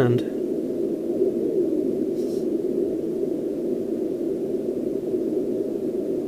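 Homebrew SST 20-metre QRP CW transceiver's receiver playing steady hiss of band noise through an external amplifier's speaker, with no stations heard. The owner puts the empty band down to poor band conditions, not the receiver's sensitivity.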